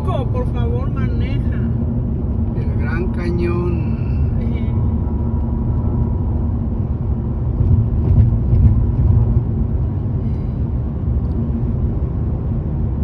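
Steady low road and engine rumble heard inside the cabin of a car driving on a highway, swelling briefly about two-thirds of the way in.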